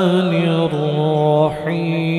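A man's voice in melodic Quran recitation (tilawat), drawing out long held notes with slow ornamented turns in pitch. The note steps down about two-thirds of a second in, and there is a brief dip near the end before the next held note.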